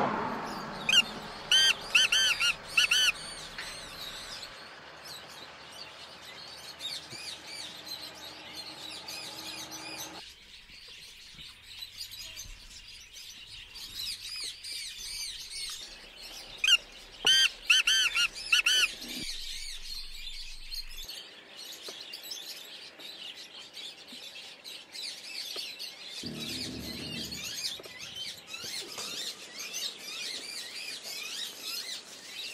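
Black francolin calling: two short runs of loud, harsh repeated notes, about a second in and again past the middle, over steady chirping of small birds.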